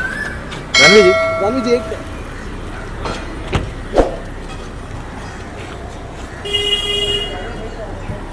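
A car horn honks about a second in, over shouting voices, and again briefly near the end. A car door shuts with a solid thump about four seconds in.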